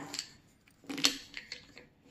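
A small brass jingle bell being picked up and handled while threaded on twine: one short metallic clink about a second in, then a few faint clicks.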